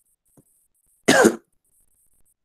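A single short cough about a second in, with a faint tick a little before it.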